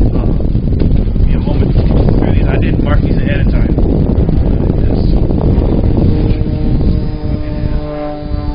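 Wind buffeting the microphone in a light outdoor breeze: a loud, steady low rumble that eases near the end. Near the end a steady hum of several tones comes in under it.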